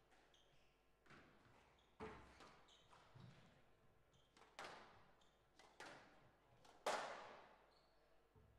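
Squash ball being struck by rackets and hitting the court walls in a rally: about five sharp, echoing hits, the last and strongest near the end, with short squeaks of shoes on the court floor between them.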